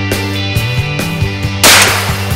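A single loud shotgun blast about one and a half seconds in, fired at a strutting turkey gobbler, over rock music with a steady beat; the blast is louder than the music and dies away quickly.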